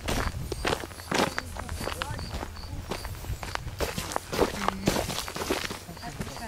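Footsteps of someone walking along a dry dirt track, a steady run of short scuffing steps.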